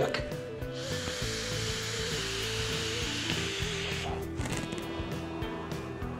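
A long direct-lung draw on an Augvape Templar RDA: a steady airy hiss of air pulled through the atomizer for about three seconds, starting about a second in. A softer exhale follows.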